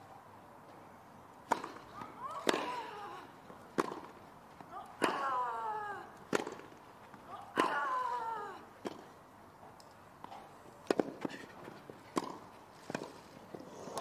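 Tennis ball struck back and forth in a grass-court rally, with sharp racket hits about every 1.2 to 1.3 seconds. Every other hit, about 2.5 seconds apart, is followed by a player's long falling grunt. Near the end comes a quicker run of hits and bounces.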